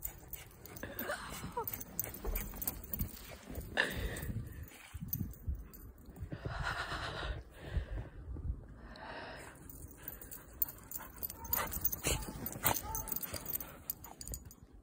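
Irregular crunching footsteps through deep snow, with two soft rushing noises about halfway through.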